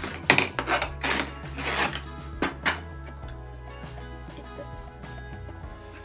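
Small hard-plastic toy canister being taken apart by hand: a few sharp clicks and knocks of the plastic lid and cup with a short rustle, in the first three seconds, over steady background music.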